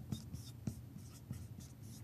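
Dry-erase marker writing on a whiteboard: faint, short, irregular strokes of the felt tip as words are written.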